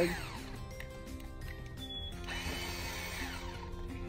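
Cordless drill boring into a birch trunk: its motor whine winds down just after the start, then rises and falls again in a second short run about halfway through, over background music.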